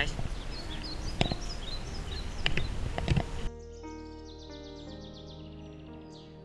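Outdoor ambience with small birds chirping and a few sharp knocks, the loudest about a second in and near the three-second mark. About three and a half seconds in it cuts abruptly to background music with steady held notes.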